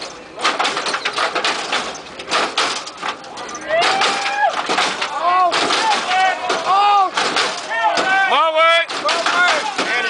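Lowrider cars hopping on hydraulic suspension, with rapid clacks and bangs of the front ends slamming and bouncing. From about four seconds in, men shout and holler over it in long rising-and-falling calls.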